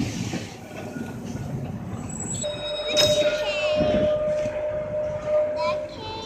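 Blackpool 606, a 1934 English Electric open-top tram, rolls on its rails with a low rumble. About two and a half seconds in, a steady metallic squeal starts from the steel wheels on the rails as the car slows on the curving track, with a sharp click about three seconds in. The squeal stops just before the end.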